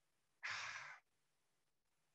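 A man's single breath into a handheld microphone, lasting about half a second, starting about half a second in; otherwise near silence.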